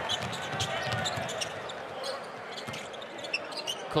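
Basketball being dribbled on a hardwood court, with short high sneaker squeaks, over a steady arena crowd murmur.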